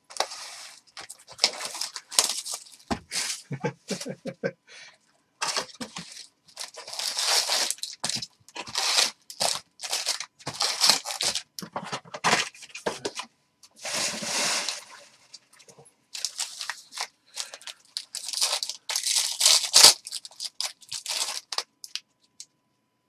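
Foil wrappers of jumbo baseball card packs being torn open and crinkled in repeated, irregular bursts of crackling.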